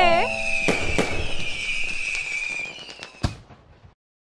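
Fireworks: a few sharp bangs over crackling and a high fizzing hiss that fade away to silence near the end.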